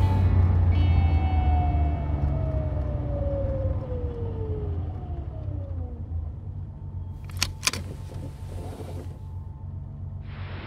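A car engine running steadily, heard from inside the cabin and slowly fading, with a tone falling gradually in pitch over several seconds. Two sharp clicks follow about seven and a half seconds in.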